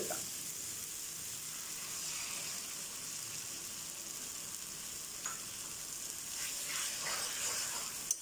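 Chopped vegetables sizzling steadily in a hot wok while a metal spatula stirs them; about halfway through, beaten eggs are poured into the pan.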